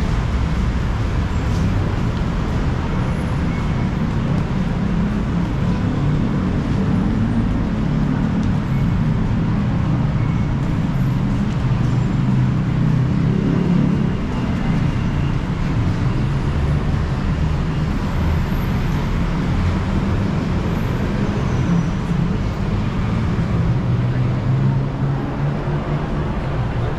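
Steady low rumble of city road traffic heard from an elevated walkway, continuous and unchanging in level.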